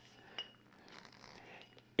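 Quiet hand-handling of a stuck champagne cork being gripped and twisted, with one short squeaky click about half a second in; the cork stays in.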